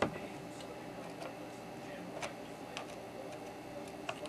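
Soft, scattered clicks and ticks of a soldering iron tip and copper desoldering braid working along a row of IC pins as the solder is wicked off: one sharp click at the start, then a few fainter ones, over a low steady hum.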